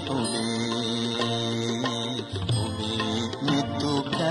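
A devotional song with instrumental accompaniment, holding one long sustained note for about the first two seconds before the melody moves on.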